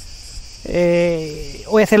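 A steady high-pitched chorus of insects (PANN hears crickets) runs throughout. About a second in, a man gives one drawn-out hesitation sound, "eh", and his speech starts again near the end.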